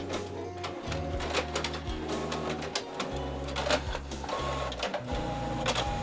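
All-in-one printer running a print job, its mechanism clicking and whirring irregularly. Background music with a steady bass line plays underneath.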